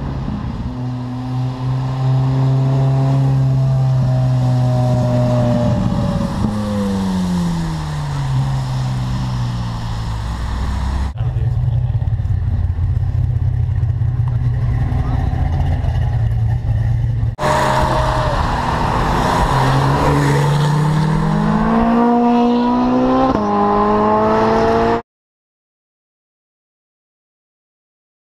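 Ferrari 458 Speciale's naturally aspirated V8 exhaust: a steady high engine note that falls away in pitch, then a lower steady note, then a rising note as the car accelerates hard. The sound cuts off suddenly near the end.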